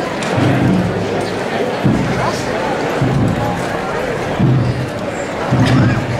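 Slow processional band music with a heavy low beat about every second and a half, over the murmur of a crowd and scattered voices.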